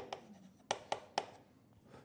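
Chalk writing on a chalkboard: faint scratching, then three short, sharp taps of the chalk a little under a second in.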